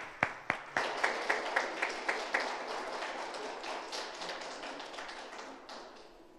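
Small audience applauding: a few distinct claps thicken about a second in into steady applause that slowly dies away and stops near the end.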